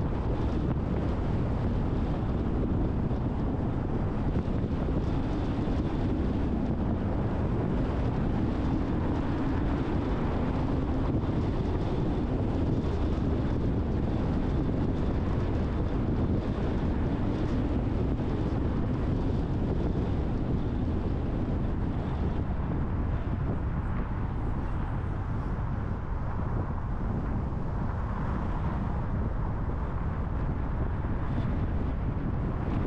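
A car driving at a steady cruising speed: a continuous rumble of tyres and engine, with wind noise on the microphone.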